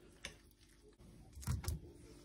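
Metal spoon clicking lightly against a glass salad bowl as the salad is mixed, then two dull knocks about a second and a half in as the spoon is set down and the phone camera is handled.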